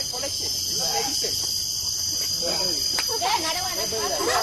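Insects keep up a steady, high-pitched chorus, with people's voices talking underneath.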